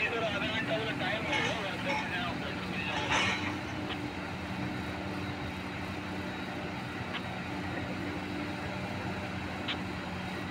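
Steady low diesel drone of heavy mining machinery: a Tata Hitachi 1900 hydraulic excavator working beside a haul truck, with a brief louder noisy patch about three seconds in.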